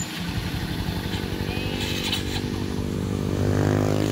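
Small motorcycle engine idling steadily, getting slightly louder near the end.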